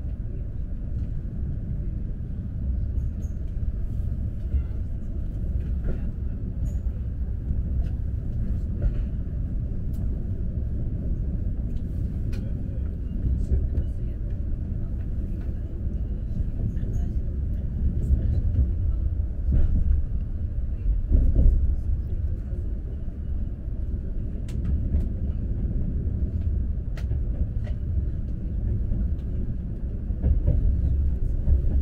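Steady low rumble heard inside the passenger cabin of an Alfa Pendular electric tilting train running at speed, with occasional faint clicks. The rumble swells briefly a little over halfway through.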